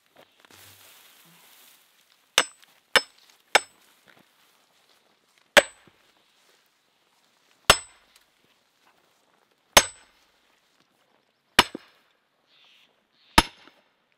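Steel splitting wedge being driven into a log with a sledgehammer, metal striking metal with a sharp ringing clang. Three quick lighter taps set the wedge, then five heavy blows follow about two seconds apart as the log splits.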